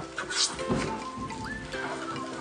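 Background instrumental music with steady held notes, and a wooden hand plane's stroke shaving along a plank once, loudly, about half a second in.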